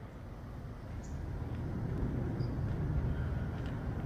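Faint low background rumble, getting a little louder about a second in, with a few faint ticks and no voices.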